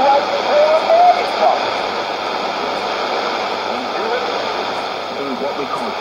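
Shortwave AM radio reception through a portable receiver's loudspeaker: a steady hiss of static with a man's voice faint and hard to make out beneath it, a little clearer in the first second or so and again near the end.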